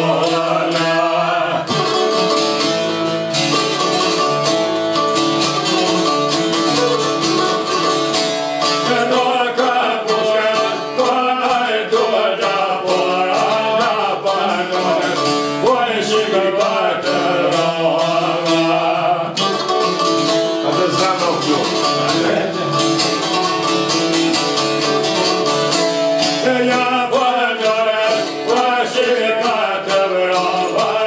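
Albanian folk song played on çifteli, two-stringed long-necked lutes, plucked in fast, dense runs, with a man singing in a wavering, ornamented line over them.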